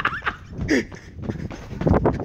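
Young people's short, high-pitched yelps and laughter as they run, over a clatter of quick footsteps.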